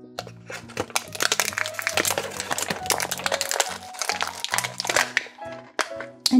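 Clear plastic blister tray of a Shopkins 12-pack crinkling and crackling in a dense run of sharp clicks as figures are pushed out of it, starting just after the beginning and stopping shortly before the end, over steady background music.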